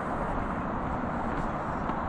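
Steady rushing outdoor background noise with a few faint light ticks.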